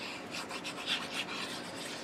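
Tip of a glue pen rubbing along the edge of a piece of patterned cardstock in a quick run of short, scratchy strokes as glue is applied.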